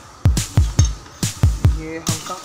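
Background electronic music with a drum-machine beat: deep kick-drum thumps several times a second, with sharp snare-like hits between them. A pitched melodic line comes in near the end.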